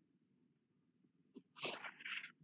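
Near silence, then one brief sharp noise about one and a half seconds in.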